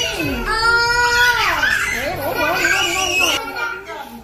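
A young child's high-pitched voice, drawn out in long wavering cries that slide down in pitch about halfway through.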